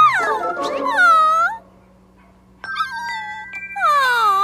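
A cartoon puppy's high whimper, its pitch dipping and then rising, about a second in. A short music cue of held notes follows, then near the end a girl's voice gives a cooing "aww" that dips and rises.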